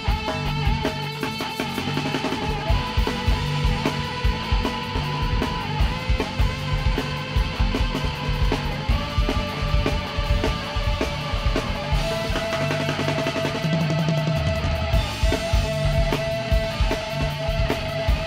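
Live rock band playing an instrumental passage: electric guitar holding long notes over a steady drum-kit beat.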